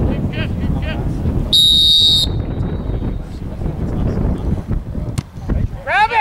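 A referee's whistle blown once, a single steady high note under a second long about a second and a half in, over a low rumble of wind on the microphone.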